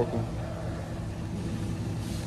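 A steady background rumble of noise, with no clear rhythm or distinct events.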